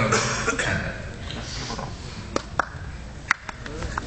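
Room noise of a panel audience in a hall, with a short cough near the start and several sharp clicks in the second half.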